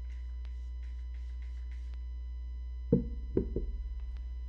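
Steady low electrical hum with faint high ticking about three times a second that stops halfway through. About three seconds in, a sharp knock and then two lighter knocks, as objects are handled and set down on the table.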